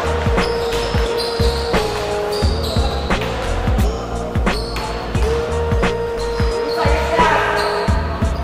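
Background music with a steady beat of deep, falling bass-drum hits under a held synth note that repeats in phrases.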